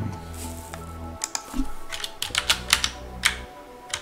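Computer keyboard keys clicking in quick, irregular strokes as text is typed, starting about a second in, over steady background music.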